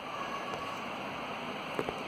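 Ceiling fan running at high speed on a newly fitted 2 µF run capacitor, a steady rushing of moving air that sounds like a turbine. It is running at full speed again, where the worn capacitor it replaced had left it turning slowly.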